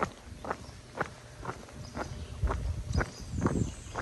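Footsteps of a hiker walking downhill on an asphalt road, about two steps a second. A low rumble joins in about halfway through.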